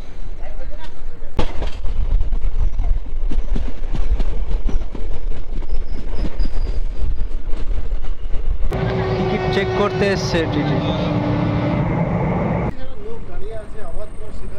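A passenger express train running, heard from its open coach doorway: a steady low rumble with a stream of wheel clicks over the rail joints as it picks up speed. About nine seconds in, a louder spell of about four seconds carries a held tone that drops in pitch partway through.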